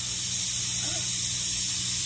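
Steady hiss of corona discharge from a homemade 40,000-volt ion generator running, as ions stream off its sharp negative electrode, with a low steady electrical hum underneath.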